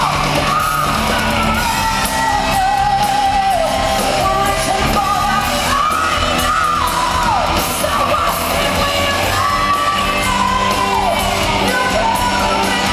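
Live rock band in a large hall: a female lead singer belts long held notes that fall away in pitch at their ends, over electric guitars and a full band.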